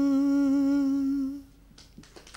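A woman singing a Malayalam love song unaccompanied into a microphone, holding the last note of the phrase as one long steady hum that fades out about a second and a half in.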